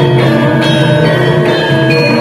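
Gamelan accompaniment for a jaran kepang dance: bronze metallophones and gongs struck in a steady pulse, about two notes a second, each note ringing on under the next.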